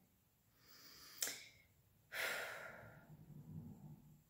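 A woman's quiet breathing during a pause: a soft intake, a small mouth click just over a second in, then a longer exhale or sigh about two seconds in that fades away.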